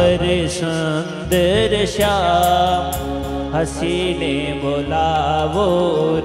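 Devotional Hindu kirtan: a singer's gliding melody over a steady held drone, with sharp percussion strikes keeping the beat.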